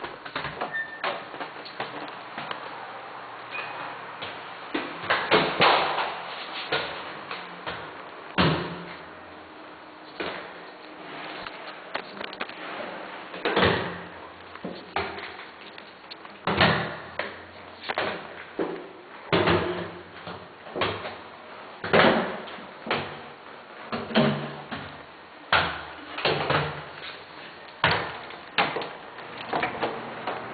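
A series of knocks and thumps, scattered at first and then coming about once a second in the second half, over a steady faint background.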